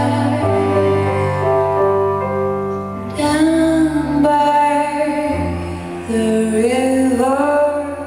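A slow live piece for piano and cello, with long held notes and some gliding notes near the end. A woman's voice sings sustained notes over the instruments.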